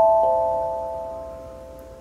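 Small mass-produced pentatonic steel tongue drum struck with a mallet: one more note just after the start, then the chord of notes rings on and fades slowly. It sounds pretty in tune.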